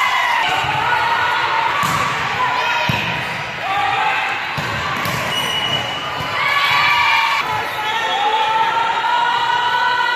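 Volleyball rally in a gym: girls' voices calling and shouting over it, and several sharp smacks of the ball being served, passed and hit.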